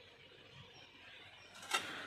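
A single sharp mechanical click from the tractor's controls about three-quarters of the way in, against a faint, quiet background.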